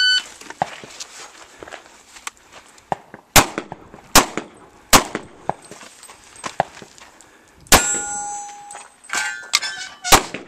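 A shot-timer beep at the start signals the shooter to begin. Then shots from a Kahr MK40 .40 S&W compact pistol: three about three-quarters of a second apart, and a fourth about three seconds later that sets a steel target ringing for about a second. More shots and ringing come near the end.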